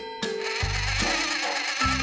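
Cartoon background music with a buzzing, whirring mechanical sound effect starting about a quarter second in.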